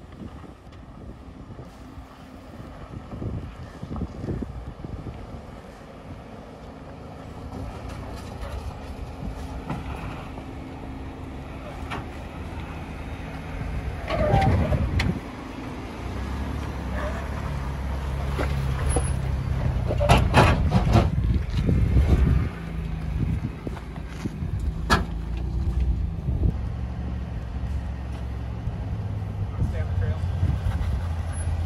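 Ford Bronco engines running at low crawling speed over rock, the engine note stepping up and down with the throttle and growing louder as one approaches. Sharp knocks of tyres or underbody on rock come in a few times, near two-thirds of the way in and again a little later.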